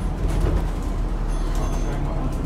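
Steady low rumble of an Alexander Dennis Enviro400H MMC diesel-electric hybrid double-decker bus under way, heard from inside the lower deck.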